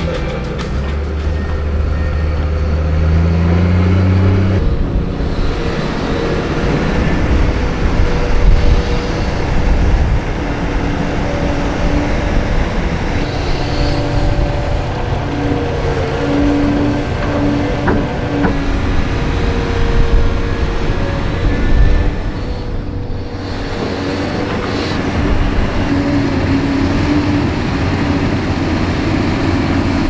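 Komatsu PC490 hydraulic excavator's diesel engine and hydraulics working under load, a heavy steady machine noise whose tones shift up and down as the arm moves. Soil spills from the bucket into a dump truck's steel bed.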